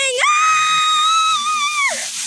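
A girl's long, high-pitched scream of "Ah!", held steady for well over a second, over the faint hiss of water falling onto gravel.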